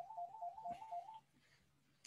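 An electronic telephone ringer warbling rapidly between two tones, stopping about a second in.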